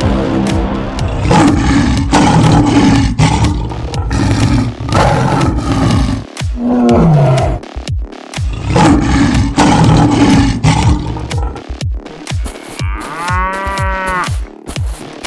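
Big-cat roars, several long ones in a row, over background music. Near the end a cow moos once.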